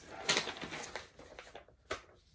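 Rustling of packaging being handled, ending in a sharp tap or click near the end.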